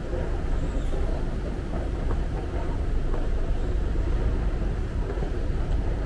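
Escalator running, a steady low rumble heard while riding down it.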